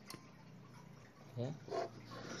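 Faint room tone with a low steady hum, then a brief spoken "ya" near the end.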